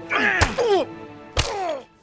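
Film fight sound effects: two sharp hits about a second apart, each with a man's falling cry, over a low steady musical drone.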